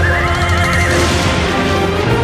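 A horse neighs over music: one long, wavering whinny lasting about a second, as a dramatic sound effect for a rearing horse.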